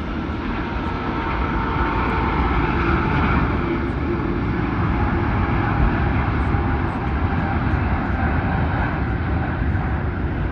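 Airbus A380-841's four Rolls-Royce Trent 900 turbofans at takeoff thrust during the takeoff roll and liftoff: a loud, steady jet noise with a deep rumble and a faint whine, swelling slightly after about a second.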